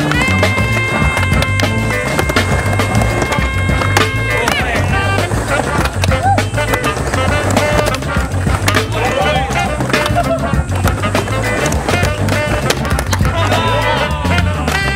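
Background music with a steady bass line and a held chord for about the first four seconds, over the rolling and clacking of a skateboard's wheels and deck on a concrete bowl.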